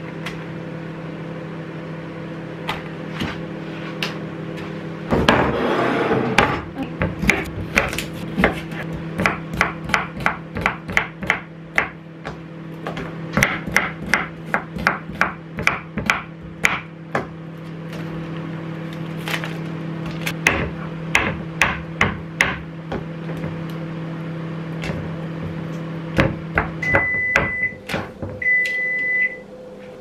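Microwave oven running with a steady hum, while a knife chops cucumber on a wooden chopping board in a long run of quick taps. A brief burst of noise comes about five seconds in. Near the end the microwave stops and beeps, first a few short beeps, then one longer beep.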